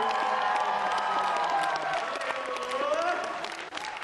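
A man's voice on a microphone draws out one long held note, dipping in pitch and rising again, and trails off near the end. The audience claps and cheers throughout.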